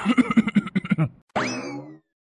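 A short stuttering giggle of quick pulses, then a cartoon 'boing' sound effect whose pitch jumps sharply up and slowly sinks.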